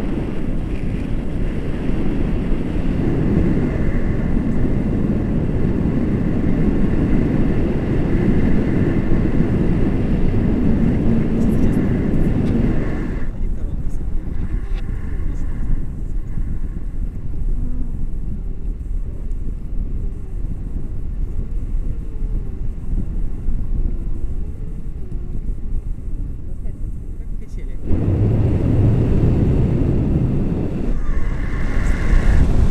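Wind rushing and buffeting over an action camera's microphone in flight under a tandem paraglider. About 13 s in, the rush turns abruptly duller and quieter, and it comes back full and loud near the end.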